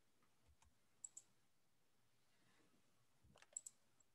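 Faint computer mouse clicks in near silence: two quick double clicks, one about a second in and another near the end.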